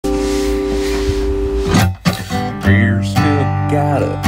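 Music: the intro of a country song, a held steady chord with hiss for the first second and a half, then, after a short break, acoustic guitar chords being played.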